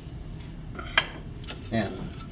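A sediment sieve being lifted off a scale and set down, with one sharp clack about halfway through.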